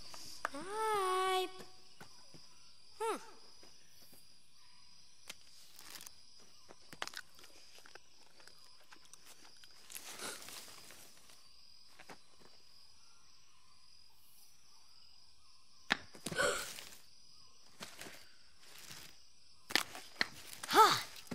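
Quiet outdoor ambience with a steady faint high-pitched hum, sparse soft rustles and footsteps, and a child's drawn-out call about a second in with a shorter one soon after. About sixteen seconds in comes a sharp snap followed by a brief burst of rustling.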